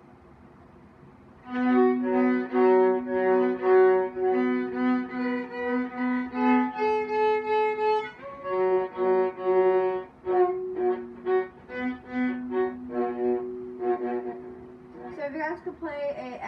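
Viola played with the bow: after about a second and a half of quiet, a string of separate held notes, one at a time. The notes turn shorter and choppier from about ten seconds in.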